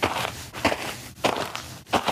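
Footsteps of a woman walking in high heels: four evenly paced steps, about 0.6 s apart.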